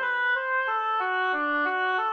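Synthesized score playback of a single instrumental line playing a quick run of eighth notes, about four notes a second, stepping up and down, while the choir parts rest.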